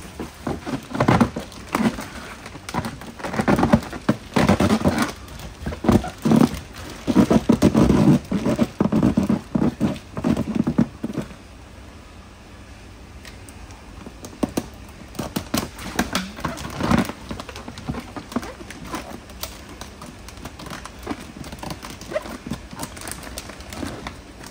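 Water splashing and sloshing with irregular thuds for about the first eleven seconds as a large koi is lifted and handled in water, then quieter scattered crackles and clicks.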